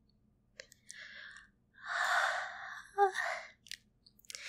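A woman breathing out in soft, breathy sighs close to the microphone, three in a row with the middle one the longest and loudest. There is a brief voiced "mm" about three seconds in and a few small clicks between the breaths.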